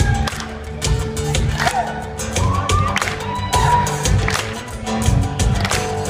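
A live acoustic band plays an instrumental intro: strummed acoustic guitars over a steady beat on a cajon. A few shouts and whoops come from the crowd.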